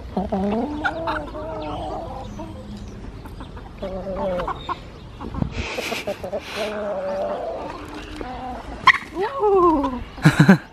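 Chickens clucking close by, many short calls overlapping, with two brief rustling bursts around the middle.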